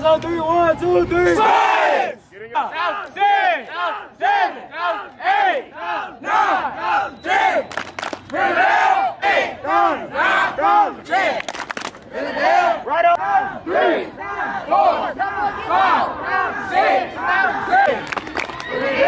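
A youth football team shouting and chanting together, many young voices in quick repeated shouts, as the team breaks down its huddle and warms up.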